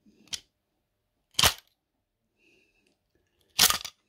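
Brass clock movement's mainspring being let down through a grooved wooden stick on the winding arbor: a light click, then two loud, sharp clacks about two seconds apart, the last and loudest near the end as the stick spins and the spring's tension runs out.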